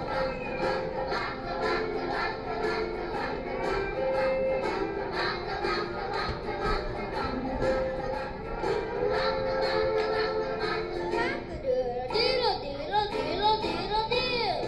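Recorded school-play music with a beat and young children singing together, played back through a TV's speakers. About twelve seconds in the accompaniment changes and one child's voice, on a microphone, leads with swooping pitch.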